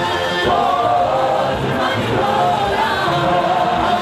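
A group of singers singing together into microphones, amplified through a PA, with several voices holding and sliding between sung notes throughout.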